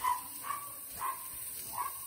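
A neighbour's dog going crazy, giving a run of short, high yips and barks at uneven intervals.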